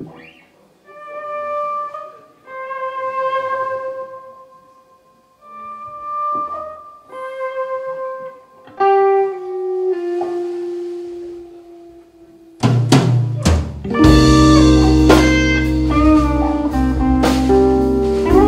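Electric guitar playing slow, separate sustained single notes with short gaps between them; about thirteen seconds in, the full band comes in loud with drum kit and bass guitar under the guitar.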